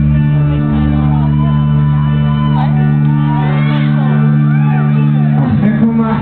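A live folk-rock band holds a steady, sustained intro chord on guitar and keyboards. Audience members shout and whoop over it, with short calls throughout.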